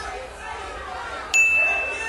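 A single high, steady electronic tone, like a ding or beep, that starts suddenly about one and a half seconds in and holds for about half a second, louder than the faint voices and hall murmur before it.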